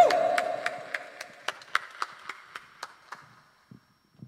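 A few people clapping, the claps scattered and thinning until they die away about three seconds in. Under them a single held note from the stage rings out and fades.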